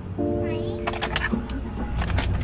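Low, steady rumble of a moving car heard from inside the cabin. Over it a held musical tone starts just after the beginning and stops a little past the middle, and short bits of speech follow.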